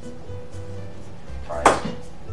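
Faint background music with a steady tone and a pulsing low beat, with one sharp click from the miniature pool table about one and a half seconds in.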